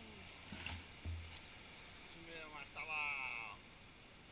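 Small waves washing and lapping on a sandy beach, heard as a soft steady wash with a few low rumbles in the first second and a half. A person's voice rises over it from about two seconds in for a little over a second.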